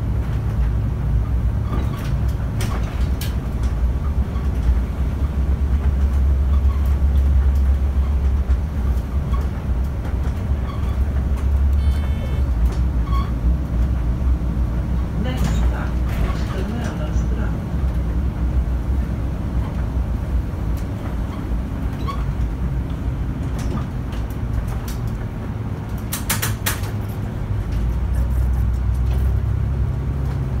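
Volvo city bus heard from inside near the front, its engine and drivetrain giving a steady low rumble while driving, louder in the first third and again near the end, with interior rattles and clicks.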